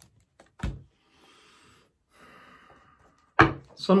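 Tarot cards set down on a table with a short thud, followed by faint rustling as the deck is handled, then a sharp knock just before a man starts to speak.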